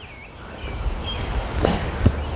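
Footsteps on a wooden deck with low rumbling handling noise as the microphone is carried along, growing louder about half a second in.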